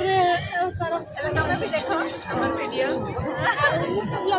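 Speech: several voices chattering close by.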